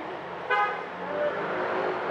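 Road traffic noise from passing vehicles, with one short, loud toot of a vehicle horn about half a second in.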